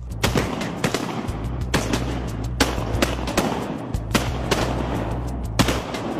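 A volley of shotgun fire from several hunters shooting at ducks: about ten shots at irregular spacing, some close together, with background music underneath.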